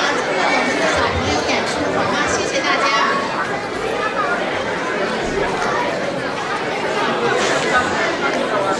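Audience chatter: several people talking at once, overlapping voices with no music.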